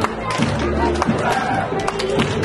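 Music playing while a large crowd claps along, with voices calling out over it.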